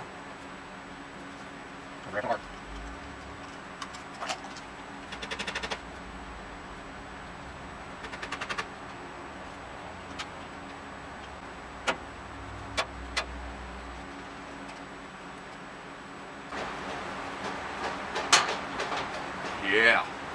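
Steel body panels and hinge pins of a go-kart being handled and fitted: scattered metallic clicks and taps, two short rattling runs, and a louder knock near the end, over a steady low hum.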